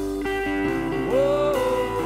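Country band music with no singing: an electric guitar, a Telecaster-style solid-body, plays a lick of sustained notes. About a second in, one note is bent upward and held.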